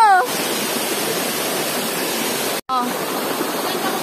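Shallow stream rushing over stepped rock cascades: a steady, even rush of water. The sound breaks off for an instant a little past halfway, then resumes unchanged.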